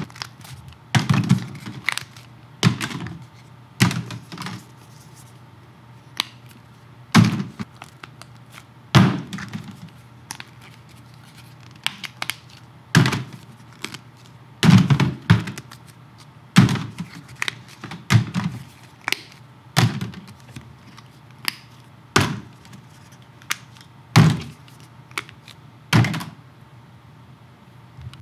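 Plastic squeeze bottles of paint set down one after another on a tabletop: a couple of dozen separate knocks at irregular intervals, some coming in quick pairs.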